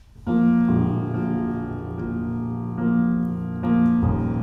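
Grand piano playing slow, held chords to open a song. The first chord comes in just after a moment of quiet, and a new one follows every second or two.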